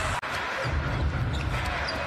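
Basketball game sound in an arena: a ball being dribbled on the hardwood court over a steady crowd rumble. The sound drops out for an instant about a quarter second in, at an edit.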